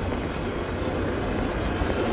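Motorbike engine running steadily while riding along a dirt track, heard from the pillion seat as a low, even rumble.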